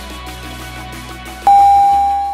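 Background music, then about one and a half seconds in a loud electronic interval-timer beep: one steady tone that starts suddenly and fades slowly. It marks the end of one timed exercise and the start of the next.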